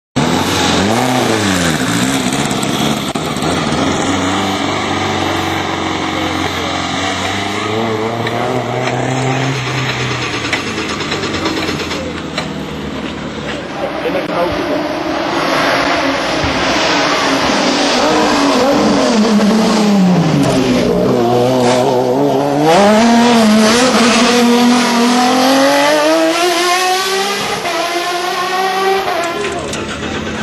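Racing car engines at a hillclimb, loud and revving hard. The pitch climbs under acceleration and drops back at each gear change, several times over in the second half.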